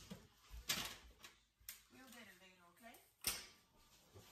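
Two sharp knocks of items being set down on a hard kitchen countertop, the first just under a second in and the second past three seconds, with a few lighter clicks between.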